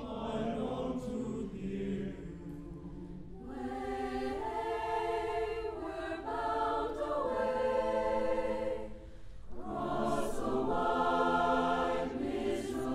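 A large mixed choir singing long held chords that swell and ease, with brief dips between phrases about three and a half seconds in and again about nine seconds in.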